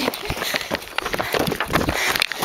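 Footsteps of someone running on gravel, an irregular string of crunching steps, with rubbing and knocking from a handheld camera being swung about.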